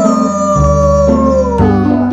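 Background music of steady chords, with one long hooting call over it that slides slowly down in pitch: a toddler's voice sounding through a plastic toy tube held to her mouth.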